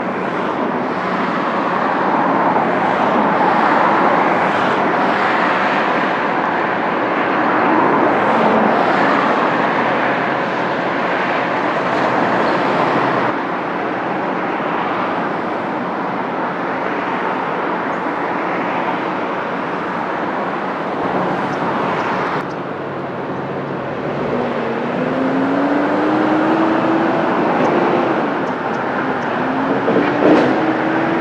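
Steady, loud outdoor road-traffic noise, shifting abruptly twice. In the last few seconds an engine note rises as a vehicle moves off.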